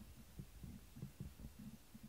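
Near silence: room tone with faint, soft low pulses, a few a second.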